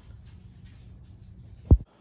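Quiet room tone, then a single short low thump near the end, after which the sound cuts off abruptly.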